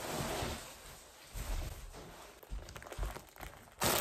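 Rustling and handling noise with a few soft, low thumps, and a louder rustle near the end.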